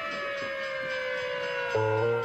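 Fire engine siren wailing, its pitch slowly falling as it winds down. Plucked guitar notes come in near the end.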